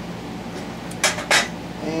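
Two sharp metallic clinks about a third of a second apart, midway through: the metal body of a small brake master cylinder set down on a galvanized sheet-metal drain pan.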